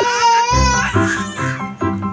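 Background music with a regular beat, with a baby's high-pitched, wavering vocalization over it in the first second.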